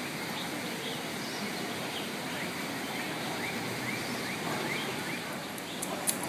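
Steady outdoor background noise, with a bird calling a short rising chirp over and over, about three times a second, through the middle.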